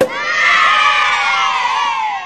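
A sharp confetti-cannon pop, then a crowd of children cheering and shouting together, fading away near the end.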